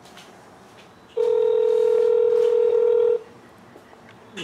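Ringback tone of an outgoing call heard through a cell phone's speakerphone: one steady two-second ring that starts about a second in, the sign that the called phone is ringing and nobody has answered yet.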